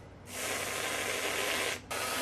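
Aerosol whipped cream can spraying cream onto waffles in one long hiss. It stops briefly near the end, then a second spray starts.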